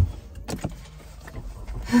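Clicks and knocks inside a car as the driver's seatbelt is pulled across and buckled: one sharp knock at the start, then a few lighter clicks, over a faint low hum.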